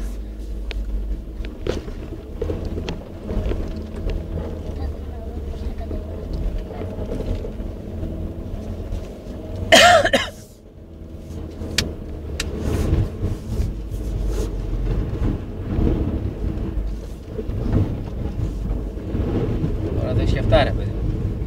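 VW Tiguan's engine running under load inside the cabin while the car ploughs through deep snow, with snow crunching and scraping against the front and underside. About halfway through a short loud exclamation stands out; the engine then briefly eases off and works harder again.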